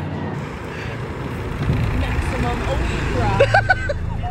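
Low rumbling noise of a roller coaster ride, with wind on the microphone, building from about a second and a half in. A few short vocal exclamations come near the end.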